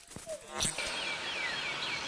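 Forest soundscape: a steady outdoor hiss with a bird singing a quick run of short, falling chirps, several a second, starting a little before a second in, after a single click.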